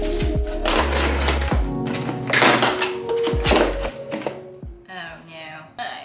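Plastic packaging rustling and crinkling in several loud bursts as items are pulled from a mailer bag, over background music with a steady low beat. A voice comes in near the end.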